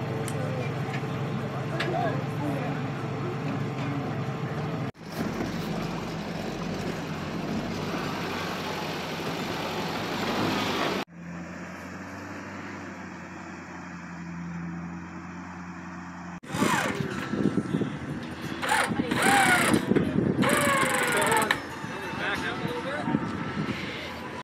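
Off-road vehicle engines running, with people's voices and shouts over them. The sound changes abruptly several times: a quieter stretch with a steady low engine tone in the middle, then a louder stretch of engine and shouting near the end.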